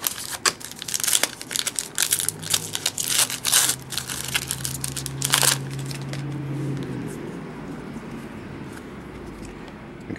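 Foil wrapper of a Panini Prestige basketball card pack crinkling and tearing as it is opened by hand: a run of sharp crackles over the first five and a half seconds, then quieter handling of the cards.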